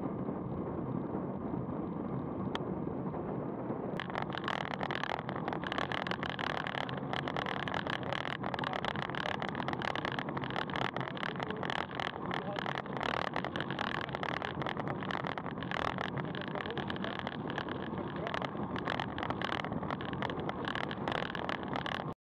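Wind rushing and buffeting over the camera microphone on a road bike at about 40 km/h, over tyre noise. About four seconds in the sound turns brighter and more crackly.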